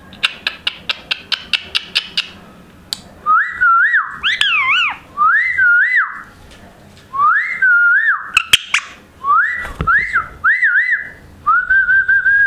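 A quick run of about a dozen sharp clicks, then an Indian ringneck parakeet whistling: a string of short, warbling whistled phrases, each rising, wavering and dropping away, repeated every second or so.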